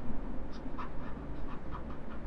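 Faint, short scratches and taps of a stylus writing on a pen tablet, a quick run of small strokes as a word is written.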